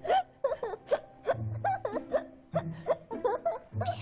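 A child laughing in quick short bursts, partly stifled, over light background music with steady held low notes.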